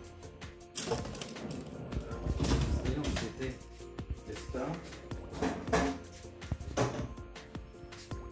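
Metal baking trays clattering and scraping against the oven's wire racks and being set down on the hob, several times, over steady background music.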